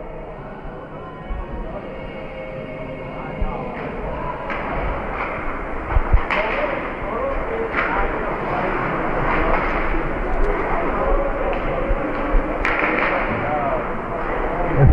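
Ice hockey game play on a rink: a steady wash of skating and rink noise with voices in the arena, broken by several sharp knocks and thuds of sticks, puck and boards. The noise grows louder as play goes on.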